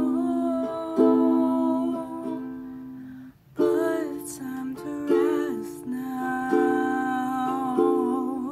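Ukulele chords strummed under a solo voice singing a slow song. The music stops briefly about three seconds in, then the strumming and singing start again.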